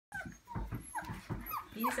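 Young puppies whimpering: about five short, high squeaks, several sliding down in pitch.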